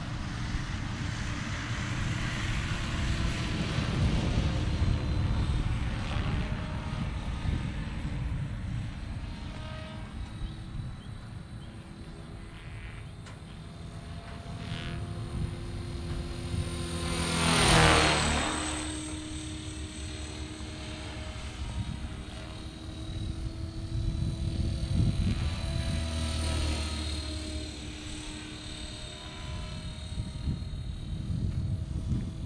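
Blade Fusion 480 electric RC helicopter, stretched to 550 size, flying with a steady whine from its rotor and motor. A little past halfway it makes a fast close pass, growing loud and then dropping sharply in pitch as it goes by.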